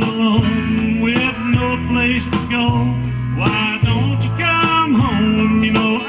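Country band playing an instrumental break, led by a fiddle with sliding notes over guitar and bass backing.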